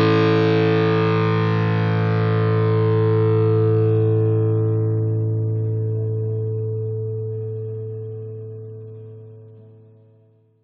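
Hard rock band's final distorted electric guitar chord held and ringing out at the end of a song. Its brightness dies away from about four seconds in, and it fades almost to silence near the end.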